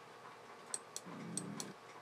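Quiet room with four faint, sharp clicks in the second half, and a faint low murmur for about half a second between them.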